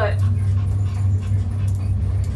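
Steady low hum inside a moving gondola cabin as it rides up the cable.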